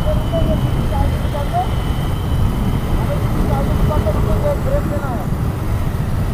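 Motorcycle riding noise: wind rushing and buffeting over the camera microphone on top of engine and road rumble, loud enough to drown out the rider's voice.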